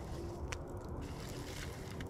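Bed of glowing wood embers crackling with scattered sharp pops, the loudest about half a second in, over a low steady rumble.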